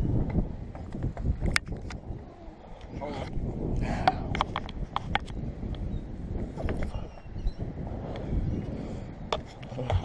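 Footsteps clunking on a wooden boardwalk and its stairs, a string of sharp knocks with a quick cluster of several near the middle, over a low rumble of wind on the microphone.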